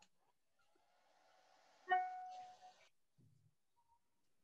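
A single ringing tone with clear overtones is struck about two seconds in and fades within a second, over a faint hiss.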